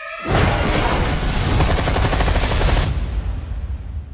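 Trailer sound effects: a dense, sustained burst of rapid gunfire layered with music, starting just after the cut to black and tailing off about three seconds in.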